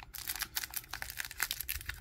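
Trading cards handled by hand, with a card being slid into a clear plastic sleeve: a run of small clicks and light rustles.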